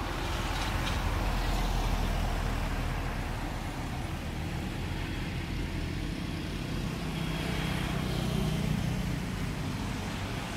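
Road traffic: a motor vehicle passing with a low engine rumble that swells a second or two in, then another engine hum rising and fading near the end.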